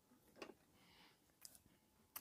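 Near silence: room tone, with two faint brief soft sounds.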